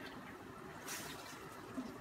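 Cream being poured from a bottle into a steel pot of mussels: a faint, soft liquid pour.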